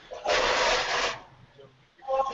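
A burst of scratchy, rustling noise lasting about a second, heard over a video-call audio line, like something rubbing against a microphone.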